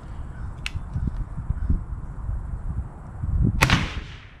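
A single .22 LR shot from a Chiappa Little Badger single-shot folding rifle near the end: a sharp crack with a ringing tail under the range's roof, over a low rumble. A faint sharp tick about half a second in.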